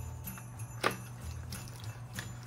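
A small cardboard box being handled and opened by hand, with faint rustles and one sharp click about a second in, over a steady low hum.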